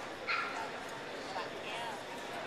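A dog gives a short, high yip about a third of a second in, then a brief wavering whine near the end, over a steady background of voices in a large hall.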